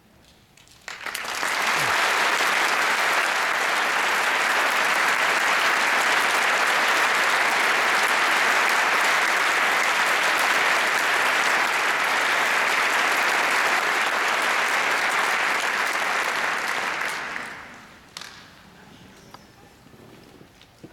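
A large audience applauding, starting suddenly about a second in, holding steady, then dying away near the end.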